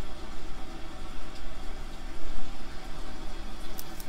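Steady background hiss and low hum of the recording's noise floor, with no distinct event.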